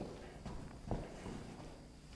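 A few faint, soft footsteps on a synthetic track runway as a person steps into place, the clearest about a second in, over quiet room tone.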